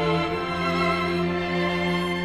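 String ensemble of violins, violas, cellos and double bass playing slow, sustained bowed chords; about half a second in the bass moves to a new note and holds it.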